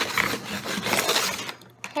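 A small metal tool scraping and chipping at the sand block of a Super Gold Dig It excavation kit: a run of rapid rasping scrapes that dies down about a second and a half in.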